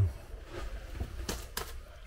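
Paintbrush dabbing and stroking liquid waterproofing membrane onto a cement shower floor along the wall: soft bristle scrubbing, with a couple of sharper swipes in the second half.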